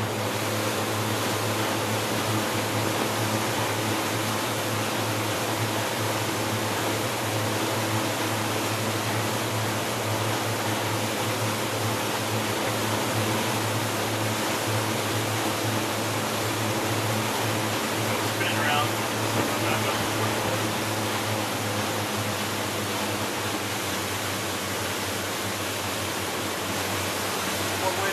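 Boat engine running steadily at speed at about 4,400 rpm, under a steady rush of wind and water.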